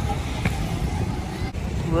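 Steady low rumble of go-karts running at the track.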